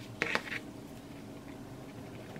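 Faint handling noise of hands pressing and smoothing a hot-glued fabric triangle on a tabletop, with a short burst of rustling and light taps near the start and a few fainter ticks later.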